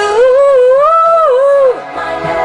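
A female voice singing one long wordless held note over soft backing music, the pitch bending up and down before it drops away near the end.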